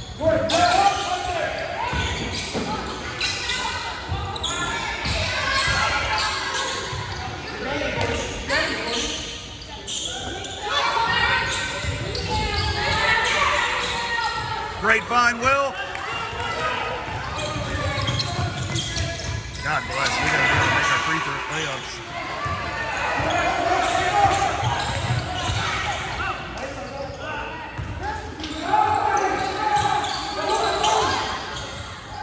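Basketball being dribbled on a hardwood gym floor, repeated bounces under a steady wash of players' and spectators' voices, echoing in a large gym.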